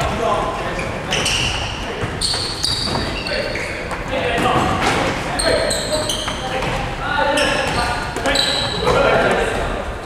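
Futsal balls being kicked and trapped on a wooden sports-hall floor, the thuds and bounces echoing in the large hall, over players' voices.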